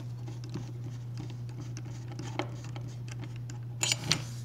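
Faint clicks and taps of a screwdriver and small metal building parts being handled while a screw is tightened, over a steady low hum, with a quick cluster of sharper clicks near the end.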